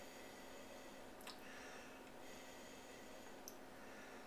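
Near silence with faint sniffing breaths at a wine glass held to the nose while the wine is nosed, and a faint click about a second in.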